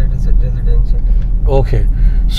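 Steady low rumble of a car driving, heard from inside its cabin.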